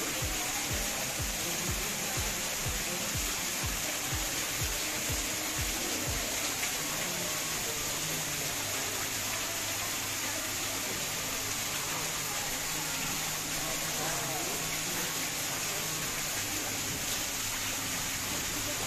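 Steady rushing of running water, like a small indoor waterfall or stream. A low, regular pulsing of about three beats a second runs under it for the first six seconds.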